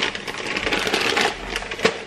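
Dry whole wheat penne rattling and clicking inside its plastic bag as the bag is handled, a quick irregular run of small clicks with plastic crinkle.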